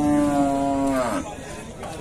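Cow mooing once: one long call of about a second that holds a steady pitch, then drops and fades away.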